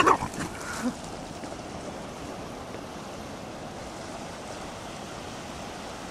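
Steady wash of sea surf on a beach, opening with a brief loud call.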